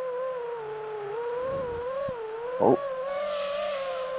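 Motor and propeller whine of small electric FPV aircraft in flight: a steady hum whose pitch wavers up and down with the throttle.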